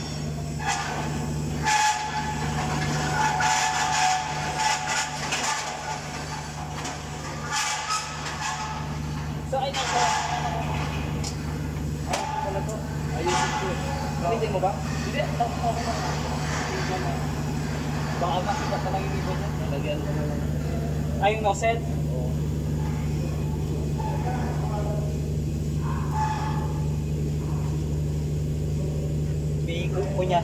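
Steady low machine hum, with indistinct voices and a few short knocks.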